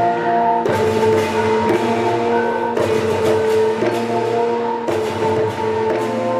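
Balinese gamelan orchestra playing: bronze metallophones and gongs ring out in sustained tones over bamboo suling flutes, with struck accents about once a second.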